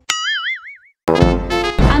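Cartoon 'boing' sound effect: a wobbling, rising tone that fades out within a second. After a short gap, background music resumes about a second in.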